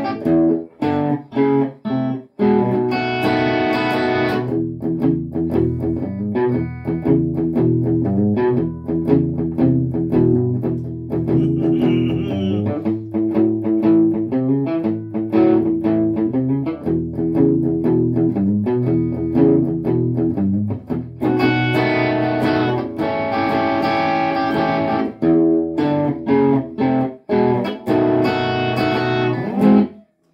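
Gretsch hollow-body electric guitar playing a 12-bar blues in E: a picked shuffle riff on the low strings, with full strummed chords at the start, about three seconds in, and again through the last stretch.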